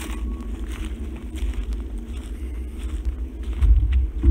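Footsteps on wood-chip mulch and dry leaf litter, with a low rumble of wind or handling noise on the microphone that grows louder near the end.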